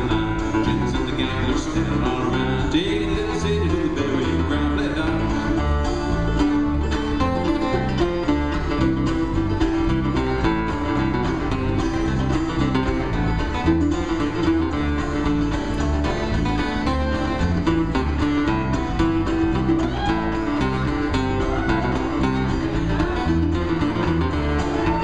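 Live acoustic bluegrass band playing an instrumental break between verses, with bowed fiddle over plucked strings and rhythm guitar at a steady tempo.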